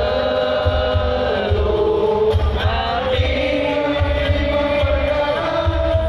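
Sholawat chanted in long, gliding sung lines by male voices, with a steady low drum beat underneath, heard through a large outdoor sound system.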